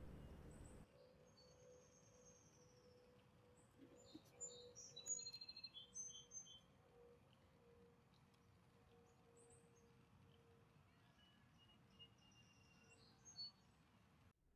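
Quiet outdoor ambience with faint birds chirping: scattered short, high chirps and twitters, thicker in the first half and again near the end, over a faint steady hum.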